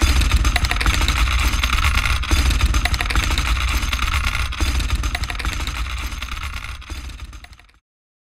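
Experimental electronic music: a low rumbling drone under dense crackling noise. It fades out over the last two seconds and stops just before the end.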